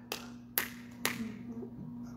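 Three sharp hand claps, about half a second apart.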